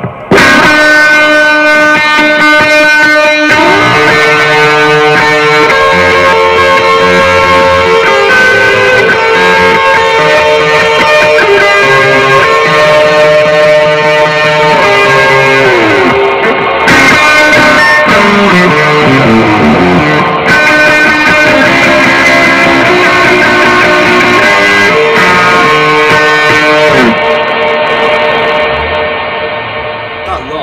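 Electric guitar played through a Blackstar ID:CORE 100 digital modelling combo amp with heavy reverb: sustained notes and chords ring into one another, with notes sliding in pitch about halfway through. The sound fades away over the last few seconds.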